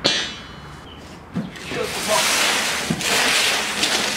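A steel coil spring is set down on a concrete floor: one sharp metallic clang with a short ring. About two seconds in come two longer scraping stretches of about a second each, as a cardboard box is slid across the concrete.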